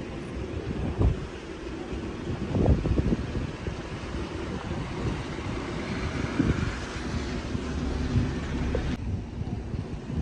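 Wind buffeting a phone microphone outdoors: a steady low rumble and hiss, with stronger gusts about a second in and again around three seconds in.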